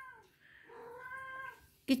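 A domestic cat meowing once, a soft, steady-pitched meow lasting about a second.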